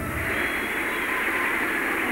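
Studio audience applauding as the song ends: a steady wash of clapping.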